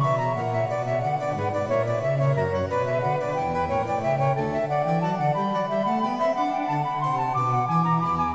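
Instrumental background music played on a harpsichord, a steady stream of quick plucked notes.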